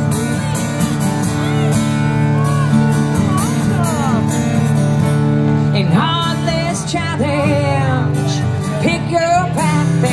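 Live acoustic duo: an acoustic guitar strummed steadily, with a voice singing over it. The vocal line comes through more clearly from about six seconds in.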